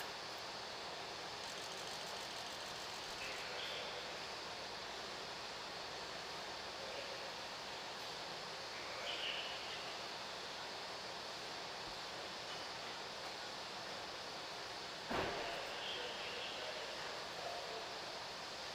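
Steady background noise of an enclosed garage, with one sharp thump about fifteen seconds in.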